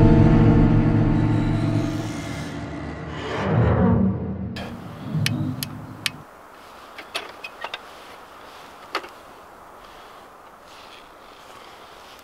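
A deep, sustained sound-effect hit under the title card, fading over a few seconds, with a whoosh about three and a half seconds in. After about six seconds it goes quiet, with a few sharp clicks as a camping lantern is handled and lit.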